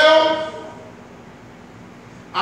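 A preacher's voice holding a long, rising shouted note that fades out within the first second, leaving the quiet background of a large hall.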